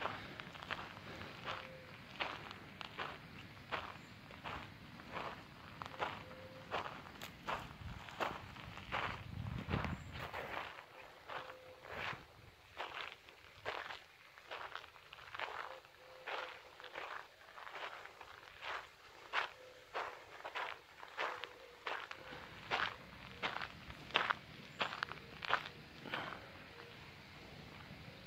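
Footsteps of the person filming, walking at a steady pace of about two steps a second.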